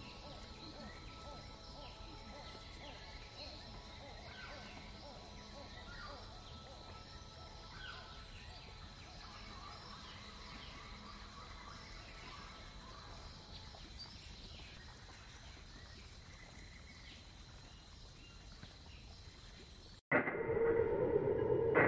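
Faint outdoor ambience: scattered short bird chirps over a steady hiss and a thin high tone.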